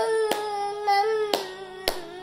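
A ten-month-old baby crying: one long, steady-pitched wail that breaks off near the end, with a few sharp taps or claps over it.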